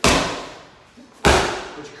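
A medicine ball slammed sideways onto a rubber gym floor twice, about a second and a quarter apart, each slam with a hard exhale that fades quickly.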